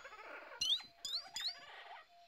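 Jungle ambience in a cartoon soundtrack: three short, high, rising animal chirps in quick succession, with a few faint clicks, over a quiet background.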